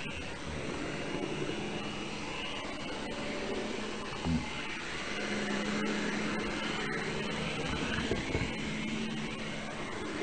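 Model train running along its track, heard from a camera riding on it: a steady whirr with a low hum and a brief knock about four seconds in.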